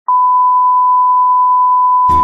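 A steady electronic test tone: one pure, high-pitched beep that starts abruptly and holds at a single unchanging pitch, loud.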